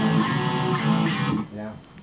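Electric guitar chord ringing out after a strum, fading away about a second and a half in.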